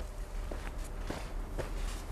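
A few soft footsteps on the leafy forest floor, irregularly spaced, over a low steady rumble.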